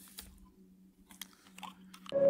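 Faint crinkles and clicks of a plastic water bottle being handled near a desk microphone, a few separate ticks over a faint low hum.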